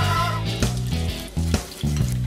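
Background music with a steady bass line, over the gritty sound of Kraft Dinner cheese powder being poured onto macaroni in a steel saucepan and then stirred in.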